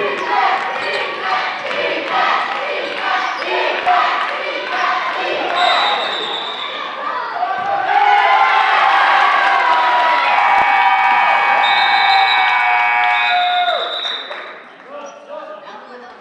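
Basketball game in a gym: a ball bouncing on the hardwood amid players' and spectators' voices, and a short referee's whistle about six seconds in. A loud, held din of voices follows for several seconds and dies down near the end.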